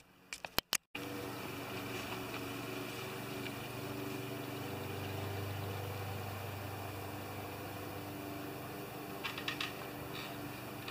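A steady low motor hum, like an engine idling, starting about a second in, with a few light clicks near the end.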